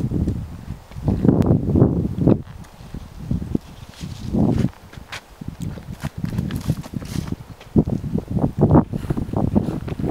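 Footsteps and rustling through dry shrubs and grass, with many short irregular clicks and low thumps.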